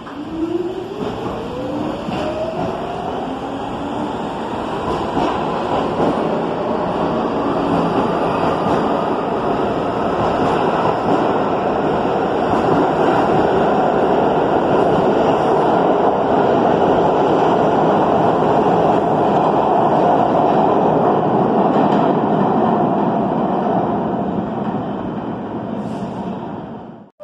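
R46 subway train pulling out of an underground station. Its motor whine rises in pitch over the first several seconds as it accelerates, then gives way to loud, steady wheel-and-rail noise as the cars pass, fading near the end as the last car leaves.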